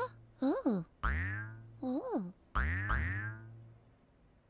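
Cartoon 'boing' sound effect heard three times, each a springy falling twang over a low hum, the last two close together. Short rising-and-falling vocal 'oh?' sounds come between the boings.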